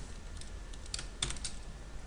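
Quiet computer keyboard typing: a handful of separate key clicks, several in quick succession a little over a second in.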